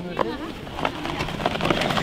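A snowskate deck sliding down a packed-snow slope, an uneven crackling scrape with many small irregular clicks. A short voice is heard at the very start.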